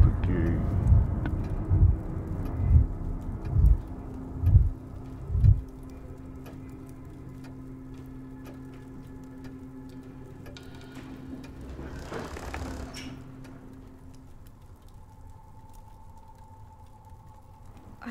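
Horror film soundtrack: deep thuds about once a second over a sustained low drone, after which the drone carries on more quietly, with a brief swell about twelve seconds in.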